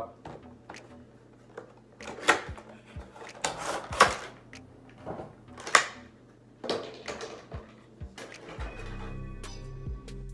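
A cardboard Funko Pop box being opened and its clear plastic insert pulled out and handled: several short, sharp crinkles and rustles over the middle seconds. Background music comes in near the end.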